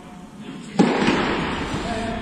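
One loud smack with a long echo about three quarters of a second in, the sound of a tennis ball being struck or hitting a hard surface inside a large indoor tennis hall.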